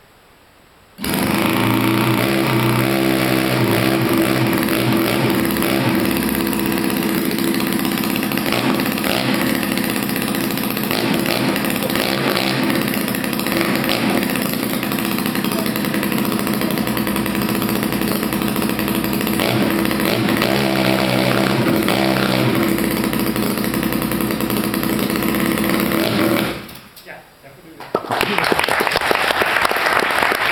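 Miniature working replica of a JAP single-cylinder speedway engine bursts into life about a second in, runs loudly and steadily for some 25 seconds, then stops. Applause starts near the end.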